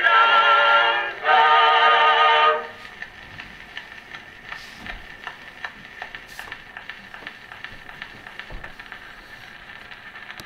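Edison Blue Amberol cylinder record playing on an Edison cylinder phonograph: a vocal group sings two closing chords, the last ending about two and a half seconds in. After that the stylus runs on through the end of the groove with steady surface hiss and scattered crackles and clicks.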